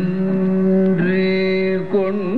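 Carnatic classical music in raga Manji: a long held note, steady in pitch, that breaks briefly about a second in and is then held again.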